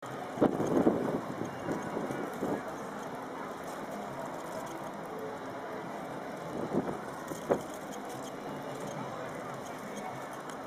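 Steady outdoor background of distant town traffic, with a few sharp brief knocks near the start and again about seven and a half seconds in.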